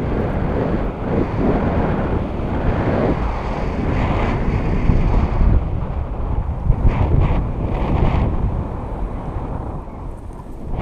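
Airflow rushing and buffeting over an action camera's microphone during a tandem paraglider flight, rising and falling in gusts, with a few brief flaps of louder rush.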